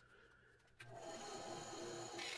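Near silence, then about a second in a bandsaw starts to sound faintly and steadily as its blade cuts a thin strip of rosewood.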